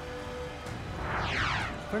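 Background music with a downward-sweeping whoosh transition effect in the second half, over arena crowd noise.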